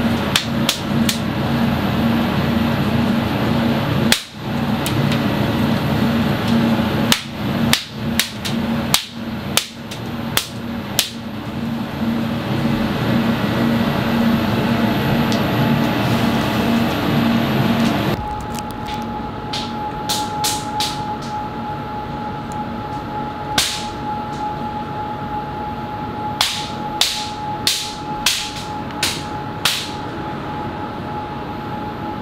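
Hand-stretched biangbiang noodle dough being pulled and slapped against a work counter, giving sharp slaps in irregular bursts. This is the slapping from which the noodle's name is said to come. A steady kitchen hum runs underneath and changes abruptly about halfway through, taking on a steady tone.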